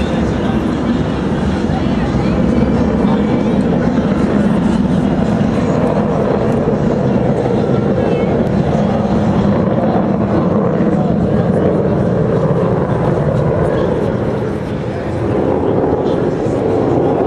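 Steady jet noise from the Blue Angels' F/A-18 Hornets passing overhead in a four-plane diamond formation, dipping briefly near the end.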